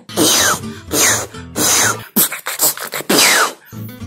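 Beatboxer blowing air out through the mouth in about five short, breathy bursts, several carrying a whistle that falls in pitch. These are demonstrations of the poh snare beatbox effect.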